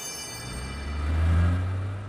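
Cartoon car-engine sound effect of a small taxi driving past: a low hum that swells to its loudest about halfway through and then fades. A sparkling chime dies away at the start.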